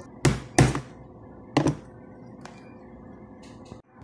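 A screwdriver tip is pounded into the glued corner seam of a plastic laptop charger case to crack it open. There are two quick knocks near the start and another about a second and a half in.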